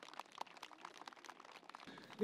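Near silence, with faint, irregular clicks and crackles.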